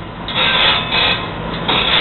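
Loud rasping grinding from a saw-filing room's automatic grinder as it works around the hard-tipped teeth of a circular saw, coming in swells of about half a second.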